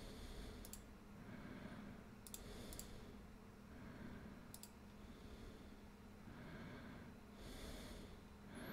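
Four faint, sharp computer mouse clicks, two of them close together, over soft, slow breathing close to the microphone and a faint steady hum.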